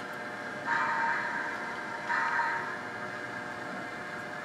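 Two short tooted blasts, each under a second, from a model locomotive's sound decoder playing through its small speaker.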